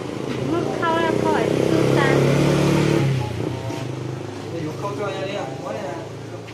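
A motor vehicle engine running close by for about two and a half seconds, then dying away near the middle, with voices talking briefly over it.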